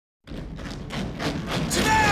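A rhythmic beat of thuds, about three or four a second, starts after a moment of silence and grows louder. Near the end a voice breaks in with a loud call.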